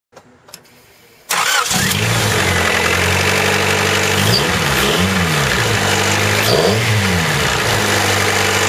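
Honda CRX four-cylinder engine, fitted with an open cone air filter, starting up about a second in and settling into a steady idle. It is then blipped: two quick revs just before the five-second mark and one more shortly before the end, each rising and falling back to idle.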